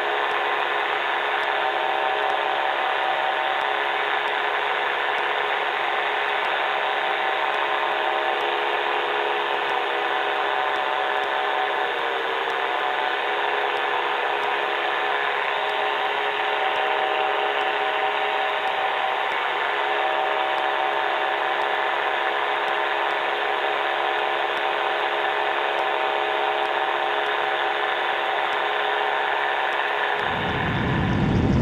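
Engine and pusher propeller of an Evolution Revo ultralight trike running steadily in cruise flight, a constant multi-tone drone. The pitch dips slightly for a moment about twelve seconds in.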